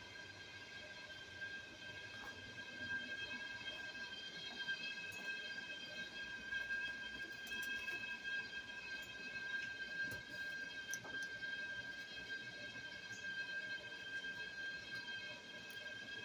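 Faint, steady high-pitched whine: one held tone with fainter tones above it, with a few soft clicks.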